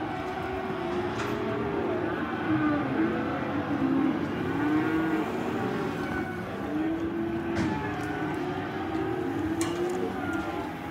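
A pen of young black cattle calling, many overlapping moos and bellows rising and falling over one another without a break, with a few short knocks among them.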